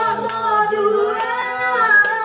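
Women singing a karaoke duet into a microphone, holding long sustained notes.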